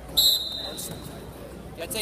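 Referee's whistle: one short, loud blast of about half a second, starting the wrestlers from the referee's position.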